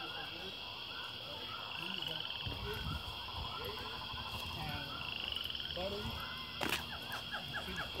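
Faint outdoor ambience: a steady high-pitched hum with many small repeated chirping calls, faint voices now and then, and one sharp click a little before the end.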